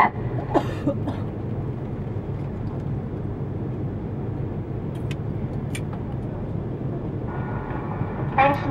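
Steady low rumble of an Airbus A330-300's engines and airframe heard from inside the passenger cabin as the aircraft rolls along the ground after landing, with a few faint clicks about five seconds in.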